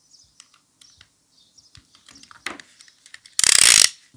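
Snap-off utility knife's blade slider ratcheting along its track near the end, a fast run of clicks lasting about half a second and by far the loudest sound. Before it, faint small clicks and crackles of soap being handled.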